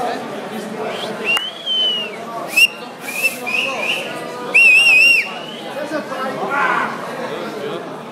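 Crowd members whistling: a long held whistle about a second in, a few short whistles, then a loud warbling whistle around the middle, over the chatter of a crowd in a hall.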